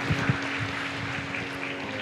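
Quiet hall ambience with a steady low hum. Near the start come a couple of soft thumps from handheld microphones being handled.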